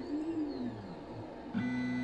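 Stepper motors of a 3D printer converted into a pick-and-place machine whining as the head travels across the bed. The pitch sweeps up and then back down in one smooth arc, and a steady tone comes in near the end.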